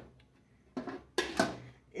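Aluminium pot lid being settled onto a cooking pot by hand: a couple of short knocks about a second in.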